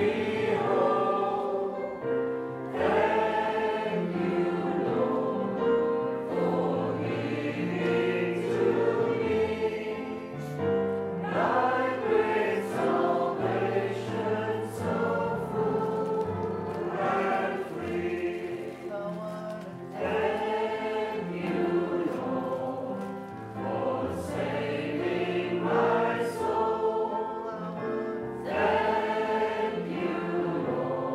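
Voices singing a gospel hymn of thanksgiving to piano accompaniment, in sung phrases of several seconds with short breaks between them.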